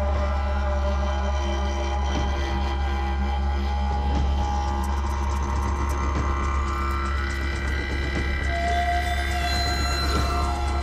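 Eerie music built on a steady low didgeridoo drone, with sustained higher tones held above it.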